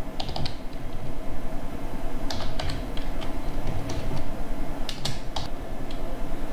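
Computer keyboard keys being typed in short bursts of clicks with pauses between them, over a steady low background hum.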